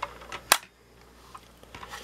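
A 1/24-scale die-cast model car clicking as it is handled. There is a light click at the start, then one sharp, louder click about half a second in.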